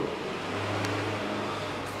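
A steady low mechanical hum, at a moderate level.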